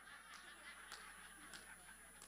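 Faint audience laughter, barely above the room tone.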